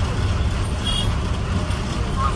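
A city bus heard from inside the passenger cabin: a steady low engine and road rumble.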